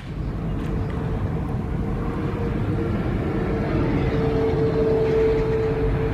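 Road and engine noise heard from inside a moving car: a steady rumble with a constant hum running through it.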